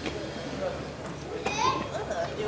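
People talking, with a high, rising voice about one and a half seconds in.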